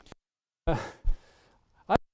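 A man's speaking voice: a breathy, hesitant 'uh' with an audible exhale about two thirds of a second in, then the start of a word at the very end, with silence in between.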